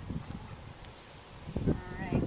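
A dog whining: a short, pitched whine rises near the end over a faint low rumble, from a dog waiting to be fed.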